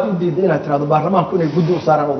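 A man talking steadily: speech only.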